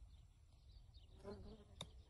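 Faint outdoor quiet with a brief buzz, like a passing insect, a little past a second in, then a single sharp click near the end.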